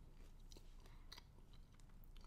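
Faint chewing of a waffle that is crispy on the outside, a few soft crunches spread through an otherwise near-silent moment.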